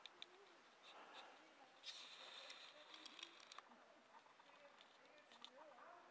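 Near silence: faint outdoor ambience with faint distant voices and a few soft ticks.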